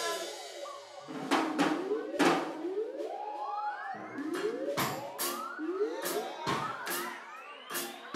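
A live band starting a song: repeated rising siren-like sweeps over sharp drum hits, with crowd chatter.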